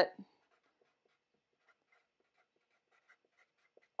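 Faint, scattered scratches and squeaks of a Sharpie felt-tip marker writing on a paper pad.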